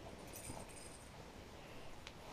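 Faint brief rustle, about half a second in, of a child's firefighter costume jacket being pulled on over his shoulders.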